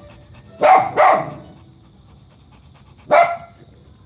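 A dog barking: two barks in quick succession under a second in, then a single bark about three seconds in.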